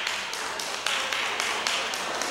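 A steady beat of sharp percussive taps, about five a second.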